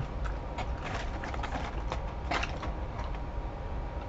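Irregular crackly crunching of someone chewing a crispy waffle-cut fry, over a low steady hum.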